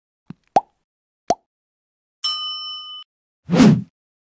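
End-screen sound effects: three short pops, a bright bell-like ding lasting under a second, then a short low burst of noise near the end.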